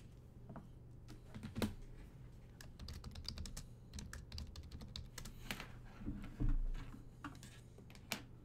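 Typing on a computer keyboard: a run of quick key clicks with a few louder knocks, and a dull thump about six seconds in.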